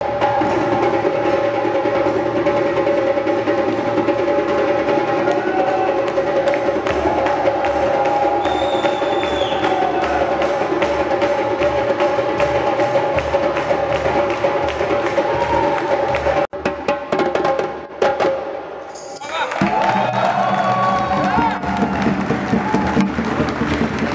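Many djembes played together in a large drum circle: a fast, dense rhythm of hand strokes with a steady held tone underneath. It cuts off abruptly about sixteen seconds in, and a man's voice takes over near the end.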